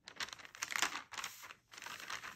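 Frosted plastic gift bag and the snack wrappers inside it crinkling as a hand presses a sticker onto the bag and smooths it flat: irregular crackles throughout.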